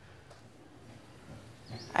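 Quiet outdoor ambience in a pause between lines of dialogue, with a faint, brief high chirp near the end.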